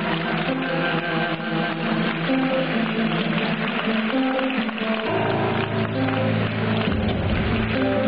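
Live instrumental music, with an acoustic guitar being strummed and picked; a low bass line comes in about five seconds in.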